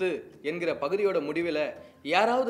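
A man speaking in Tamil to the camera: only speech.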